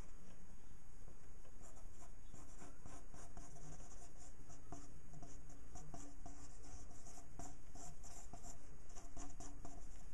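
Ink pen scratching across paper in many short, quick strokes while inking a drawing, over a steady low background hum.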